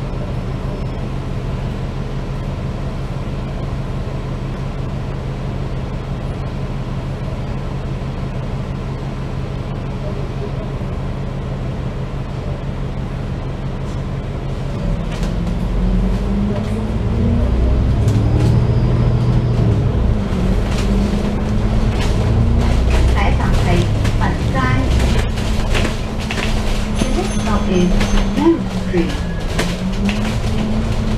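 Double-decker bus's diesel engine idling steadily while stopped, then from about fifteen seconds in revving up as the bus pulls away, its pitch rising and wavering through the gears.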